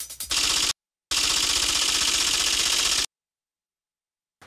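An edited-in sound effect of dense, rapid clicking in two bursts: a short one, then one of about two seconds, each cutting off abruptly into dead silence.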